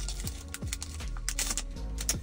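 Foil booster-pack wrapper crinkling in the hands as it is pulled open and the cards slid out, a string of small irregular crackles, over quiet background music.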